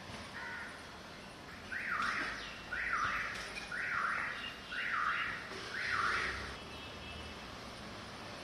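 A bird calling: one faint call, then five loud calls about a second apart, each falling in pitch.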